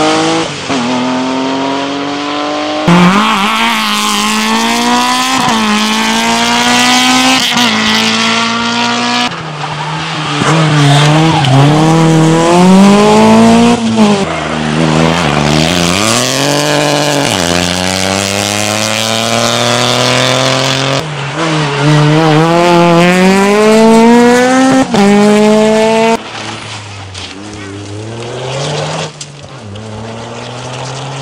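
Rally cars passing one after another at speed, each engine's pitch climbing through the gears and dropping back at every upshift. The last car, near the end, is quieter and farther off.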